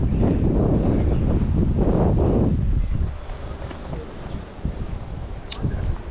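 Wind buffeting the microphone, a loud low rumble that eases off about halfway through.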